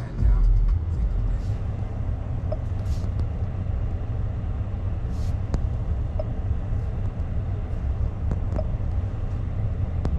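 Steady low rumble of a parked electric car's cabin with the music paused, with a few faint clicks as the infotainment touchscreen is tapped.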